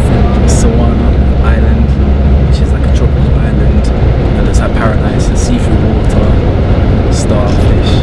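Coach bus engine and road noise heard from inside the cabin: a loud, steady low drone, with voices over it.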